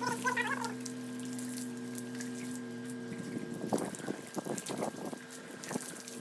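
Water from a garden hose spraying and splashing onto a mat on a wet concrete floor, the splashing growing more distinct in the second half. A steady low hum runs underneath and fades about halfway.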